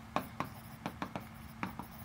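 Pen writing a word on a touchscreen whiteboard: a run of light ticks and scratches as the pen tip strikes and drags across the glass.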